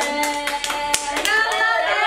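A few people clapping, a quick run of about eight claps in the first second or so, mixed with excited voices that go on after the clapping stops.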